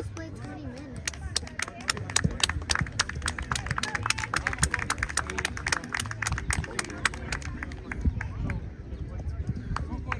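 Scattered hand clapping from a few people, quick irregular claps starting about a second in and thinning out near the end, over low voices.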